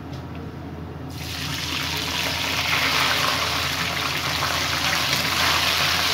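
Water and sugar going into a wok of hot oil: about a second in, a sudden loud sizzle starts as the water hits the oil, then carries on steadily as it boils up.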